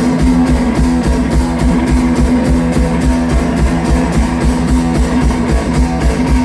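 One-man-band rock'n'roll played live: electric guitar riffing over a steady, fast kick drum and cymbal beat, with no vocals.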